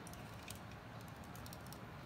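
Light, irregular clicks of a plastic model kit's parts and joints as it is held and turned in the hand, over a low handling rumble.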